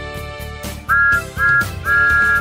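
A train whistle sounding two short toots and then a third, longer one that starts near the end, a steady chord-like whistle over upbeat children's music.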